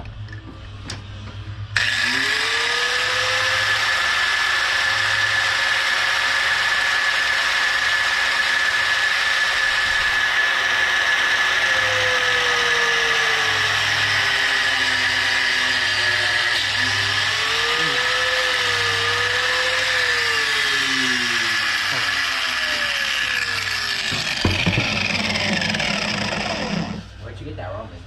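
Corded Ryobi angle grinder switched on about two seconds in and run steadily against a tube. Its pitch sags and recovers as it bears on the work. It is switched off about a second before the end.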